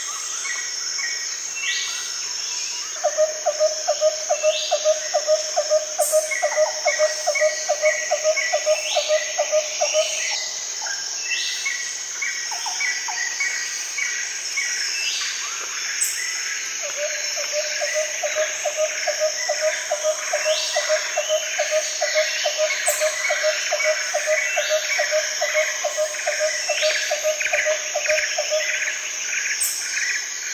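Birds calling over a steady high insect drone, with many short chirps and rising whistles. A lower call pulses rapidly in two long runs, the first starting about three seconds in and the second from about seventeen seconds until near the end.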